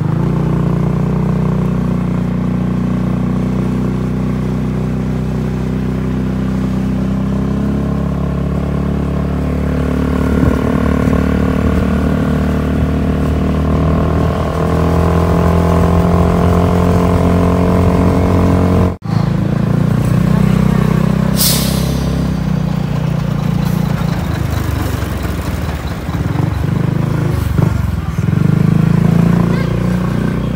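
Steady engine drone and road noise heard from inside a moving vehicle. The sound breaks off sharply about 19 seconds in and resumes. A brief high hiss follows about two seconds later.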